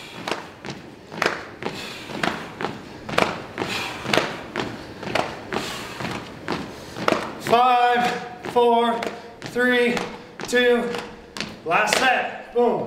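Sneakered feet landing on a hardwood floor during jumping jacks, about two thuds a second. In the last few seconds, short pitched sounds come about once a second over the thuds.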